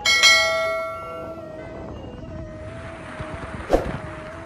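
A bell struck once, ringing with many overtones and fading over about a second. A single short, sharp hit comes near the end.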